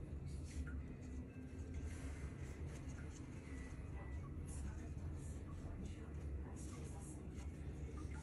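Faint, scattered rustling of a paper towel and light handling of plastic deli cups, over a low steady hum.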